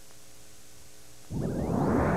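Faint steady hiss while the broadcast sound is dropped out, then, over halfway in, loud arena sound cuts back in suddenly and stays up.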